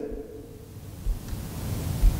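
Steady room noise, a low rumble with a faint hiss, during a pause in speech; the last word's voice fades out just at the start.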